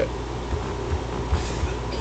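Steady low hum and hiss of background noise, with a few faint low knocks.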